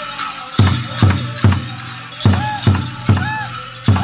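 Powwow drum group playing a Grand Entry song: the big drum struck in a steady beat of about two strokes a second, with a short pause near the middle and high sung voices over it. Bells and metal jingles on the dancers' regalia jangle throughout.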